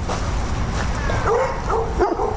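A dog whining and yipping: a falling whine about a second in, then short yips near the end.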